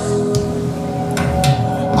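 Live band music in a pause between sung lines: held electronic keyboard chords ringing steadily, with a few sharp clicks.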